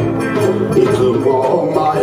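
Live band playing a folk-style song on acoustic guitars, with a melody line over the strumming.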